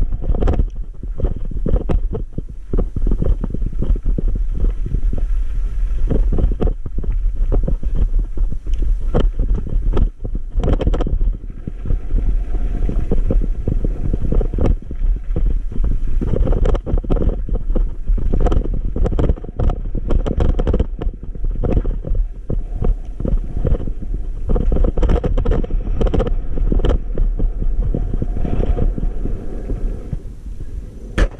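Low rumble with frequent jolts and rattles from an e-bike being ridden over a rough dirt and rock track, with wind on the microphone.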